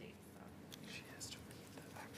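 Faint whispered speech over the low hum of room tone.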